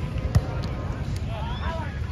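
A volleyball struck hard with the hands during play: one sharp slap about a third of a second in, over steady wind rumble on the microphone.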